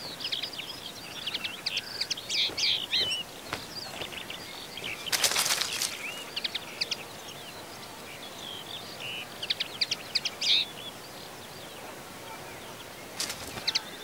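Outdoor countryside ambience with small birds chirping in short, scattered calls over a steady background hiss, and a louder burst of noise about a second long some five seconds in.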